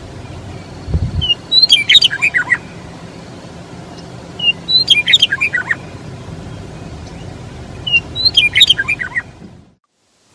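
A meadowlark singing three phrases about three seconds apart, each a quick tumbling run of notes falling in pitch, over a steady low rumble. The sound fades out near the end.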